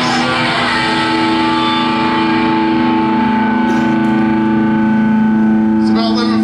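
Electric guitars held through loud amplifiers, a steady unchanging drone of a few fixed pitches that does not die away, like amp feedback.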